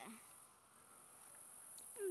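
Faint, steady, high-pitched chirring of field insects.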